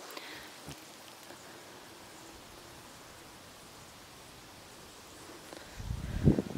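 Faint, steady rustle of a light breeze through garden plants, with a short low rumble near the end.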